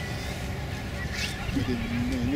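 A steady low rumble throughout, with a brief high swish about a second in and a person's voice starting near the end.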